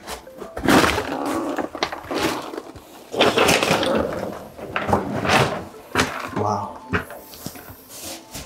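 A person crawling through a tight attic opening: several noisy rustling, scraping or breathing bursts about a second long, with a few short muttered sounds.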